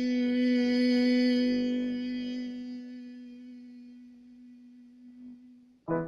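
A single held note in the tenor range, sung as a messa di voce: it swells to its loudest about a second in, then fades slowly and stops just before the end. A short, louder sound starts right at the end.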